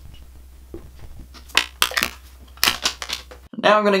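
A few sharp clicks and taps in two quick clusters near the middle, from a clear acrylic stamp block and plastic ink pads being handled, over a low hum that cuts off just before speech starts.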